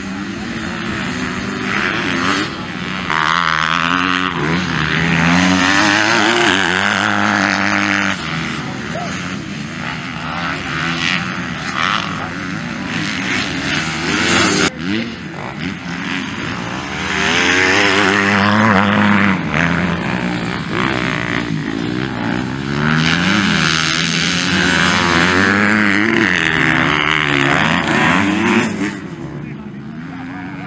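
Several motocross dirt bike engines revving hard, their pitch climbing and dropping with each throttle change and gear shift. The sound swells loudest as bikes pass nearby, about three seconds in and again from midway to near the end.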